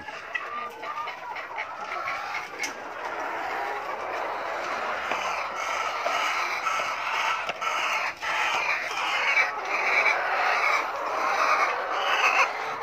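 A flock of caged laying hens, about 21 weeks old and newly in lay, clucking continuously with many overlapping calls, growing busier and louder in the second half, with a few sharp knocks among them.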